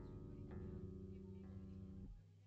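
Electric guitar through an amplifier: three chords struck and left to ring, the first at the start, then about half a second in and about a second and a half in, with a steady low hum underneath.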